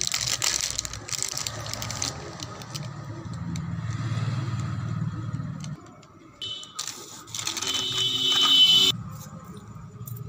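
A plastic snack packet crinkling and rustling as it is handled, then a low steady hum for a few seconds. Near the end comes a louder burst of rustling with a high, shrill steady tone, the loudest part, which stops suddenly.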